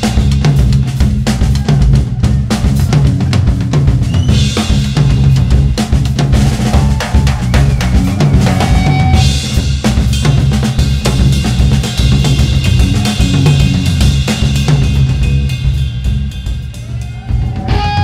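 Live rock band playing an instrumental passage, the drum kit to the fore with dense, busy hits, under electric guitar.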